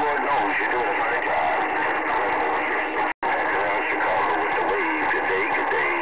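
Weak, garbled voice transmission coming through a Galaxy CB radio's speaker, half buried in steady static, typical of a distant station that is barely readable. The audio cuts out completely for an instant about three seconds in.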